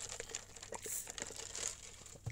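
Faint crinkling with scattered small clicks over a low hiss.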